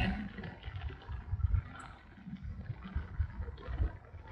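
Low, uneven rumble with irregular soft bumps inside a car's cabin, picked up by a phone's microphone.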